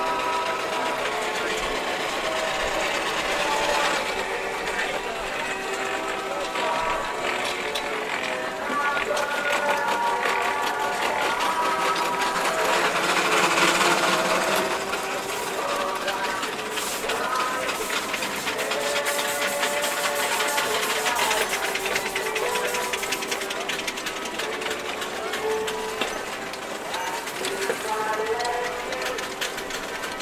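Music of held, stepping notes over the fast, even ticking beat of miniature steam traction engines running.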